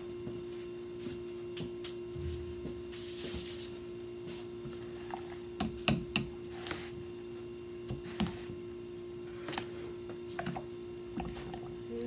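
A steady electrical hum under scattered light clicks, knocks and rustles as a stick blender and utensils are handled on a stainless steel worktable; the blender itself is not yet running.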